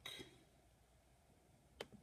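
Near silence, broken near the end by one sharp click of a computer mouse button, pressed to run the list randomizer once more.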